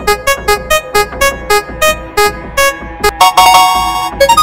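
Cartoon spinning-wheel sound effect played as short synth-keyboard notes, one per tick, spacing out as the wheel slows. Near the end comes a quick run of notes and a held chord as it settles.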